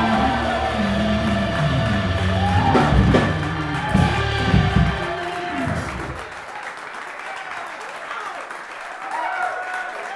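Live soul band, with electric guitar, keyboards, bass and drums and a woman singing, playing the close of a song. About six seconds in the bass and drums stop, leaving a quieter, thinner sound as scattered applause begins.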